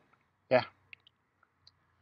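A few faint, scattered clicks: mouth sounds of biting into and starting to chew a piece of fresh chili pepper.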